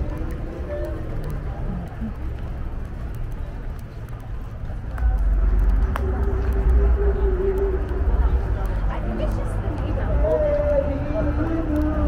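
Street ambience on a downtown sidewalk: indistinct voices of passers-by over a low rumble that gets louder about five seconds in.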